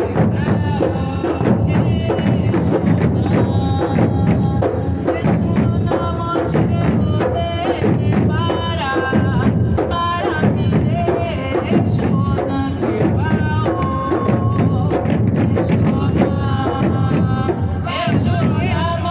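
An Afro-Brazilian percussion ensemble playing a steady rhythm on large drums struck with sticks, with group singing over the drums.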